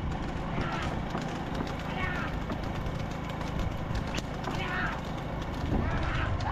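Racing bulls' hooves and a wooden bull cart clattering along a road with irregular sharp clicks over a steady low rumble, and a few short shouts from the riders.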